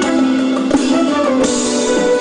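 Live band music played through a concert PA: a full band with guitars and drums.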